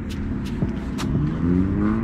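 A car accelerating, its engine note rising slowly through the second half, over a steady low rumble.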